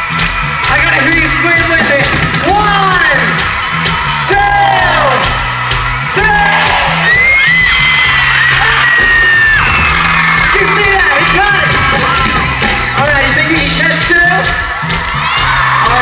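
A live band playing a steady groove through an arena PA, with fans screaming and whooping over it.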